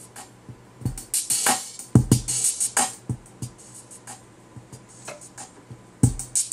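Programmed drum beat from Reason's Redrum drum machine, kick and snare hits with hi-hats, sinking lower through the middle and coming back in loud at the end: a volume automation clip pulling the track's level down and up.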